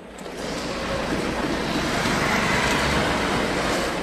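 Steady outdoor ambient noise, an even rushing sound with no distinct events, fading up over the first second.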